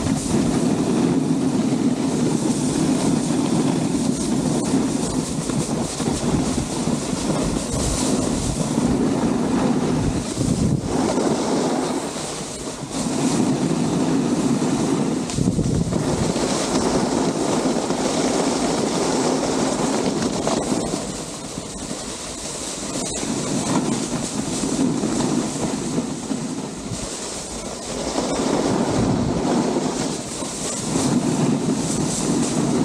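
Snowboard sliding and scraping over groomed snow, with wind rushing over the camera microphone. The noise is steady and loud, and eases off briefly a few times along the way.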